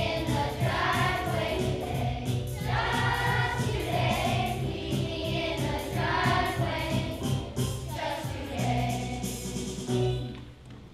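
Children's choir singing a song together with instrumental accompaniment.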